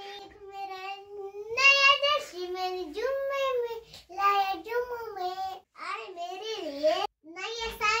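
A young girl singing a short tune in phrases of held notes that rise and fall, with brief pauses between phrases.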